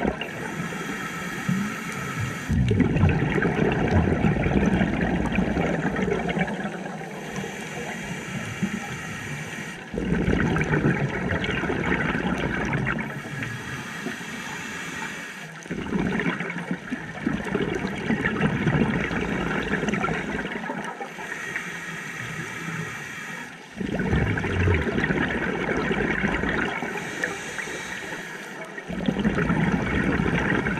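Scuba diver breathing through a regulator underwater: a hissing inhale followed by a longer, louder gurgle of exhaled bubbles, repeated about five times, roughly one breath every six or seven seconds.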